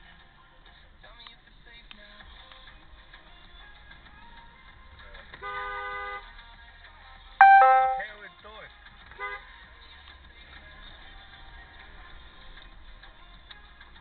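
Car horn honking twice over the faint hum of a car rolling through a parking lot: a steady two-tone honk of just under a second about five seconds in, then a louder, shorter honk about two seconds later that fades out.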